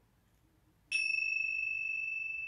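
A pair of tingsha cymbals struck together once, about a second in, then ringing on with a clear, steady high tone that fades slowly.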